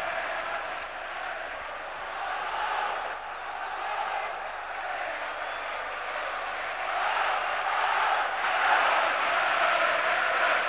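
A large, celebrating home football crowd in a packed stadium, a steady roar of voices that swells louder about seven seconds in.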